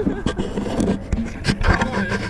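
Action camera and its mount rubbing and knocking against a sweater and harness strap: a string of scratchy scrapes and sharp clicks over steady low noise.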